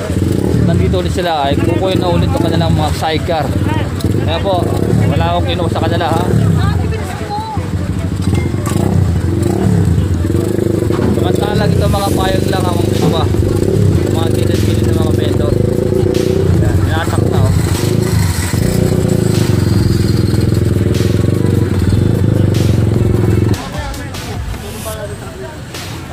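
A dump truck's engine running steadily, with people talking and calling over it; the drone cuts off suddenly near the end.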